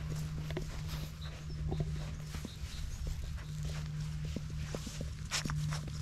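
Beagle puppy moving about and nosing among plush toys on a fleece blanket: scattered soft rustles and light taps, over a steady low hum.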